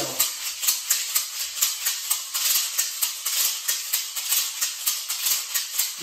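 A pair of handmade rawhide maracas shaken in a steady rhythm, about four crisp strokes a second, the right hand adding the doubled or tripled ornament of the triplet riff.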